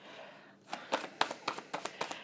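A tarot deck being shuffled by hand: after a brief quiet start, an irregular run of quick card clicks and flicks.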